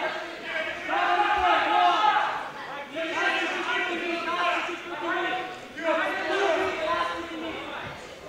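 Men's voices speaking, with no other distinct sound standing out.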